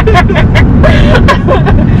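Steady low road rumble inside a moving car, with passengers talking over it.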